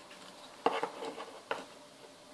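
Small plastic micro servos handled and set down on a tabletop: two short light knocks, the second sharper.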